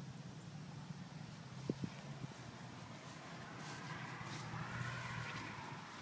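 Shuffling footsteps on grass and handling noise from a handheld camera, over a steady low hum. There are two sharp clicks about two seconds in, and the rustling grows louder in the second half.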